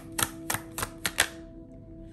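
About six quick, sharp clicks of tarot cards being handled against a table over the first second or so, then quieter, with a soft sustained music drone underneath.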